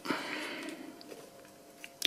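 Faint handling noise from fingers screwing a cloverleaf antenna onto a small threaded connector on a drone's plastic body, with a couple of light ticks.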